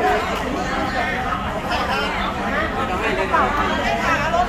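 A group of people talking over one another: steady overlapping chatter of several voices at once.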